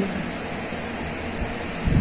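Steady background hiss with no distinct sound in it, and two low bumps near the end.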